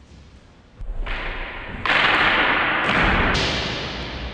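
Loud impacts from a longsword sparring exchange, feders striking and feet landing on the wooden floor, about a second in and again just before two seconds, each followed by a long echo that dies away slowly in the hard-walled court.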